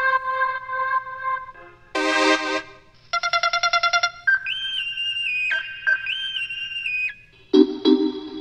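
Output Arcade software sampler playing a synthesized loop from its "Go It Alone" kit: a held two-note tone, a brief chord, a quickly repeated note, then a stepping lead line with short pitch slides, ending on a low chord stab.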